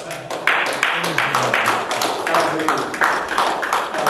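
Rhythmic hand clapping, about three claps a second, with men's voices calling out underneath.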